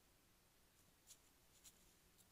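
Near silence with a steady faint hiss, broken by a few faint crisp ticks, the clearest about a second in and another half a second later: a white-tailed deer feeding in dry, frozen grass.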